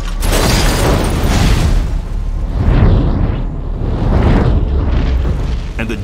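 Film sound effects of a car explosion and fire: a series of heavy booms about a second and a half apart over a continuous deep rumble, with music underneath.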